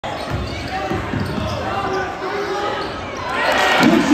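A basketball dribbled on a hardwood gym floor, several bounces in the first second and a half, under voices echoing in the gym. The noise in the gym swells louder near the end.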